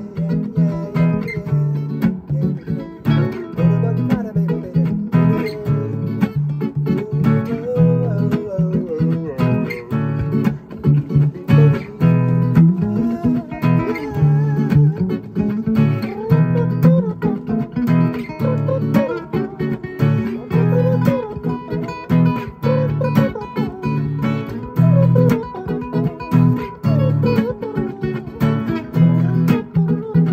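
Two acoustic guitars playing an instrumental passage together, chords strummed in a steady rhythm.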